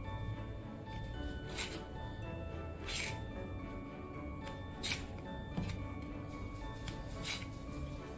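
Background music, with four short, irregularly spaced knife strokes cutting through olives onto a plastic cutting board.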